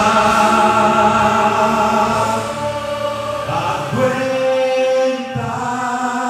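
A man singing a gospel worship song into a handheld microphone, holding long wordless notes that step to a new pitch a few times.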